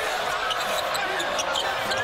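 Steady crowd noise in a basketball arena during live play, with a basketball being dribbled on the hardwood court.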